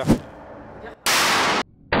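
A short swoosh, then loud gunfire in an indoor shooting range. About a second in comes a harsh burst of noise lasting about half a second that cuts off abruptly, and after a brief gap more starts just before the end.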